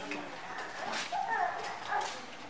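A pause in speech, with faint, brief voice sounds in the room and a soft click about a second in.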